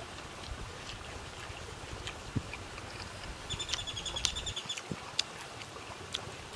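A person eating with his fingers, with scattered chewing and lip-smacking clicks, over a steady low rumble of wind on the microphone. A short, rapid ticking trill sounds about halfway through.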